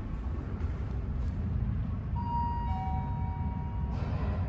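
Elevator arrival chime on a Quality traction elevator: a two-tone ding-dong, a higher tone about two seconds in and a lower one about half a second later, both ringing on until just before the end. The chime signals that the car is arriving at the landing. Under it runs a steady low rumble.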